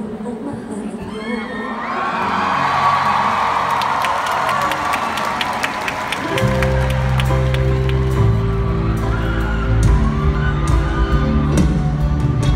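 Concert crowd cheering and clapping, with high shouts, swelling in the first seconds. About halfway through, the band comes in with a heavy bass line and sustained keyboard chords, and the cheering carries on over it.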